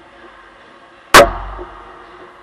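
A single sharp, very loud crack of a hard hit on the ice hockey goal about a second in, with a low rumble dying away after it as the frame shakes.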